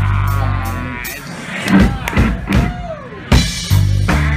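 Live rock band playing. The band drops out about a second in to a sparse break with separate drum hits and a pitched note that swoops up and down, then the full band comes back in near the end.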